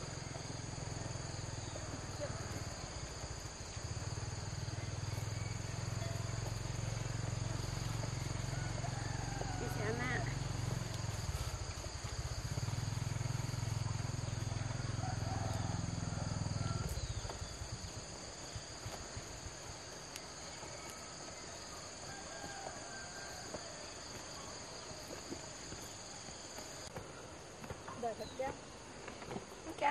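Steady insect chorus with high, continuous chirring, over a low rumble that cuts off about two-thirds of the way through. Faint, distant voices are heard briefly in the middle.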